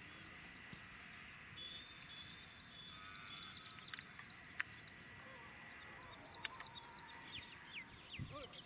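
Faint outdoor ambience: a bird chirping over and over, about five short high chirps a second, with a few sharp clicks.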